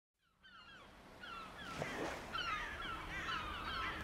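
Birds calling: a quick, overlapping run of short calls that each fall in pitch. The calls fade in from silence and grow louder.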